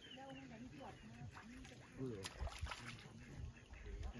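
Faint speech: people talking quietly in the background.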